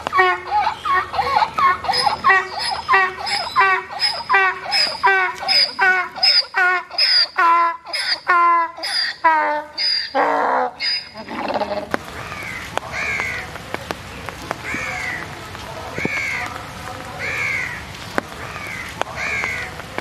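A donkey braying: a long run of rhythmic hee-haw strokes, about two a second, ending in a low groan about eleven seconds in. For the rest, a bird calls in short falling notes about once a second.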